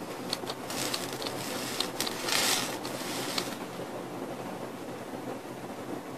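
A person exhaling a large cloud of e-cigarette vapour, a breathy hiss that swells about two seconds in, with scattered small clicks from handling the vape mod.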